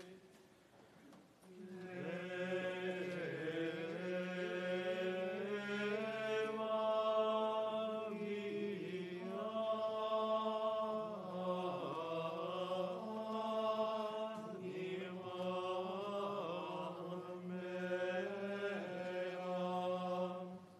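Choir singing Latin chant during the Mass, with a steady low drone beneath the voices. The singing resumes after a brief pause at the start.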